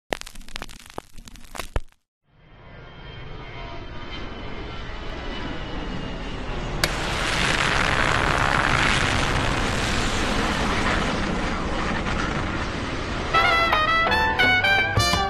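Crackling clicks for about two seconds, then, after a short silence, a rush of radio static that swells and holds with faint steady whistling tones as an old valve-style radio is tuned between stations. Near the end a salsa band with brass cuts in as the station comes through.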